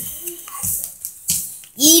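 Pokemon trading cards being handled, giving a few short rustles; a child starts speaking near the end.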